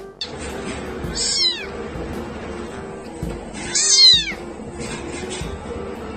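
A very young kitten mewing twice, about a second in and again near four seconds in. Each call is high-pitched and falls in pitch, and the second is louder.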